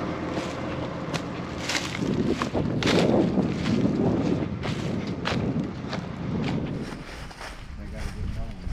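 Footsteps crunching over dry corn stubble, a scatter of sharp crackling snaps at irregular intervals, over low wind and faint distant voices.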